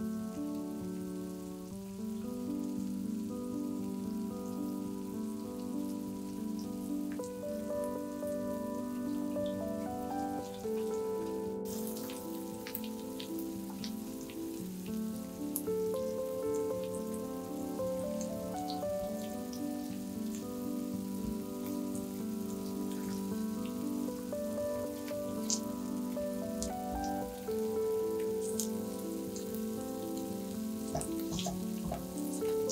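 Grated potato mixture frying in oil in a stainless frying pan, a steady sizzle with scattered small pops and crackles. Soft background music with sustained, slowly stepping notes plays over it.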